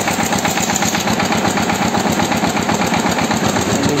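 Diesel engine of a walking tractor (tobata) running steadily at idle just after an electric start, with a fast, even chugging beat.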